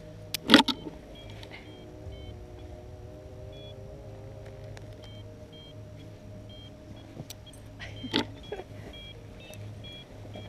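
Paragliding harness buckles and carabiners clicking and rattling, sharply about half a second in and again near the end, over a steady low hum with faint short high beeps.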